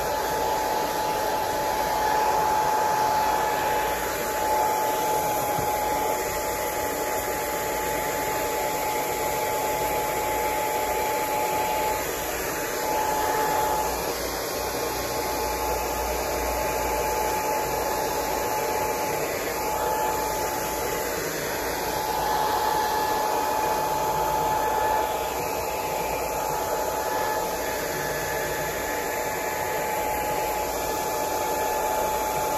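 Handheld hair dryer blowing steadily, with a constant whine from its fan motor over the rush of air.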